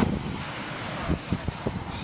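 Wind buffeting the microphone in uneven gusts, over the wash of surf breaking on the shore.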